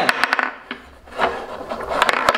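Wooden dowel rods of a homemade mini foosball table being shoved and twisted in the holes of its wooden box during fast play, rubbing and rasping. A quick run of sharp clicks and knocks comes from the pegs and ball near the start, with more scattered through.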